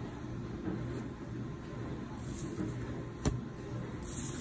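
Low steady background hum, with one sharp tap a little over three seconds in from paper lottery tickets being handled and set down on a wooden table.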